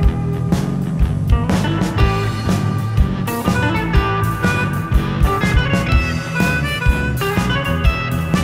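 Live blues-rock band playing an instrumental passage: harmonica played into a microphone, with electric guitar, bass and a steady drum beat.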